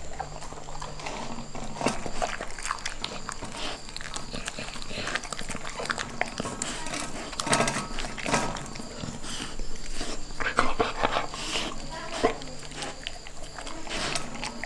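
Golden retriever puppy eating soft, crumbly cooked fish eggs from a stainless steel bowl: irregular wet licking and chewing, with small clicks of its muzzle against the bowl.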